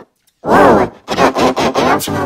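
A person's voice talking loudly, starting about half a second in after a brief tick.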